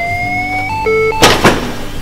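Defibrillator charging to 200 joules: a whine rising slowly in pitch, then steady charge-ready beep tones. About a second and a quarter in, a loud, sharp burst of noise comes as the shock is delivered.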